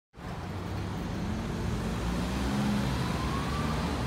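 Street traffic noise: a steady low rumble of passing vehicles, with a faint rising tone in the second half.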